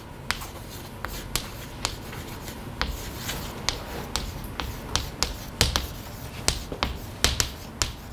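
Chalk writing on a chalkboard: irregular sharp taps and short scratches as the letters go on.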